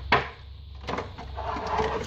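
Clear plastic blister tray of a trading-card box being handled and pried apart: a sharp click just after the start, then plastic rustling that grows louder toward the end.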